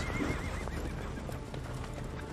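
A horse whinnies, a wavering high call in the first second that fades out, followed by faint hoofbeats in snow as horses approach.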